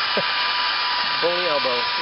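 Handheld electric hair dryer running steadily, a constant rush of air with a thin steady whine, blowing heat onto a plastic car bumper cover to soften it so the dent can be pushed out.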